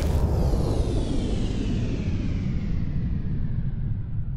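End-screen sound design: the tail of a boom hit gives way to a deep, steady rumble, while a downward-sweeping whoosh above it slowly fades.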